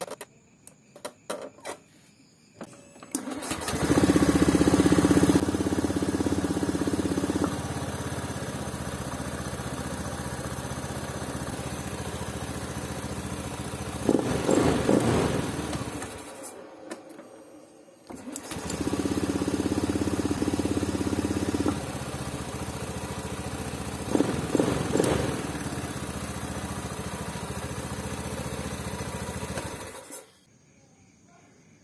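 A Honda Beat scooter's fuel-injected single-cylinder engine, after a few clicks, is started and idles fast at first before settling to a lower idle. It has a short rise in revs, dies away and stops, then is started again and does the same. The idle rising and coming back down shows that the idle air control valve, its weak plunger spring just stretched, is working properly again.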